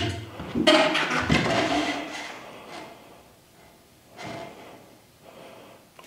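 Handling noise from a mountain bike settling onto its wall hook: rubbing and rattling of the bike with breathing, loudest in the first two seconds, then fading to a couple of faint knocks.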